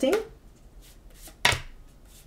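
A deck of tarot cards shuffled by hand: soft flicks and slides of the cards, with one sharper tap about one and a half seconds in.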